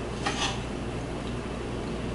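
Faint scrape and clink of a knife and fork cutting a venison chop on a ceramic plate, over a steady low hum.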